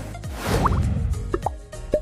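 Animated logo sting: music with a whoosh swell followed by a few quick rising plop sound effects.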